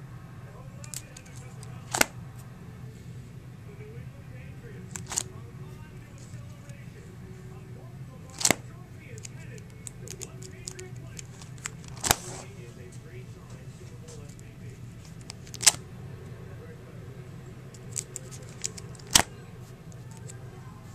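Plastic card-sleeve pages in a ring binder being turned one after another, each turn a sharp plastic snap. There are about six turns, roughly every three and a half seconds, over a steady low hum.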